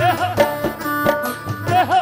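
Devotional bhajan music: a steady hand-drum beat, several strokes a second, under a melody line that bends up and down in pitch.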